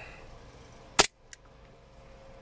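WE Hi-Capa 5.1 gas blowback airsoft pistol fired once through a chronograph: a single sharp crack about halfway in, followed by a faint short click about a third of a second later.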